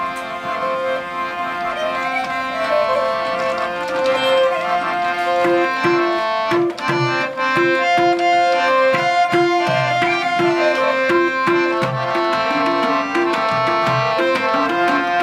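Harmonium playing sustained chords and a melody, joined about five seconds in by a pair of hand drums in a steady rhythm, with guitars along underneath: the instrumental opening of a Nepali song.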